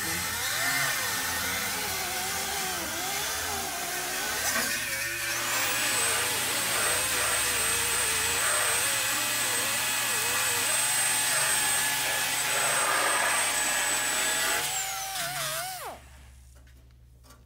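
Handheld die grinder with a small abrasive disc running on bare steel body panel, its pitch wavering as it is pressed on and eased off the metal. From about five seconds in a steady high whine holds, then winds down and stops at the very end.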